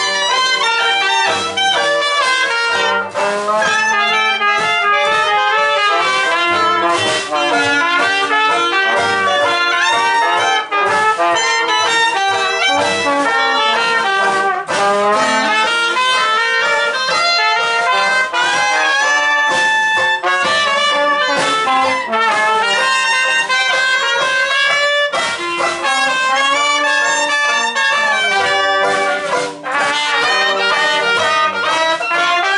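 Traditional jazz band playing: trumpet, clarinet and trombone together over double bass, banjo and drums.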